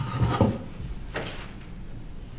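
Papers and objects being handled on a wooden courtroom witness stand: a couple of dull knocks at the start and a sharp click about a second in, over a low steady room hum.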